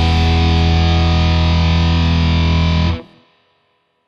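Final chord of a rock song: a distorted electric guitar chord held steady over low bass notes, cut off sharply about three seconds in.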